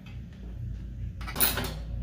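A brief clatter of hand tools and the plastic door panel being handled, about a second and a half in, over a low steady hum.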